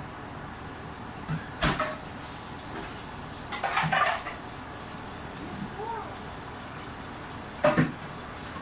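Kitchen handling sounds: three short bursts of clinks and knocks from a bottle and cookware, one about two seconds in, one near the middle as vinegar is poured into the pan, and one near the end, over a steady low hiss.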